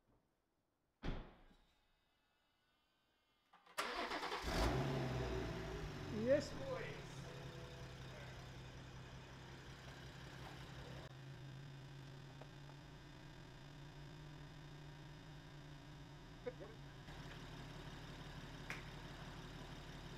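BMW M140i's B58 turbocharged straight-six starting for the first time after a turbo upgrade and a new base map. It fires abruptly about four seconds in, flares up in revs for a couple of seconds, then settles into a steady idle.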